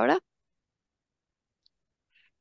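A woman's word trailing off, then dead silence on the video-call line with one faint tick near the end.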